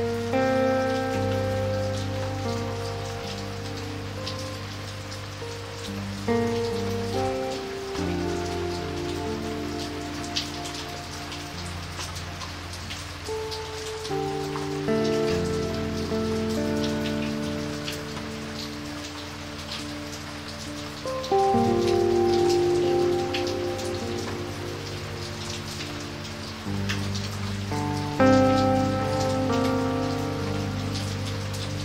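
Steady rain falling on wet pavement, with single drops ticking through the hiss. Under it, slow music of held chords changes every few seconds.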